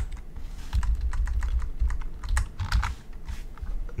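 Typing on a computer keyboard: an irregular run of quick keystrokes.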